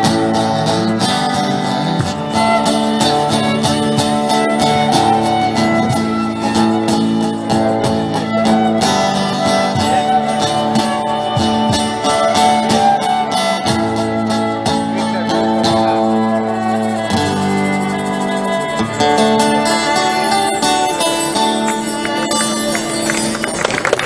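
Amplified live band playing an instrumental passage: a violin carries the melody over strummed electric guitars, with chords changing every few seconds.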